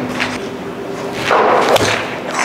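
A golf iron swung through the air, ending in a sharp crack as the clubface strikes a ball off a practice mat near the end.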